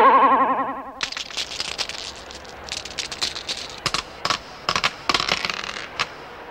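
A short warbling jingle tone fades out in the first second. Then two large dice clatter and tumble across a stone floor, a run of irregular clicks and knocks that stops just before the end.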